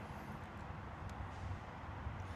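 Quiet outdoor background with a low, steady rumble and one faint click about a second in.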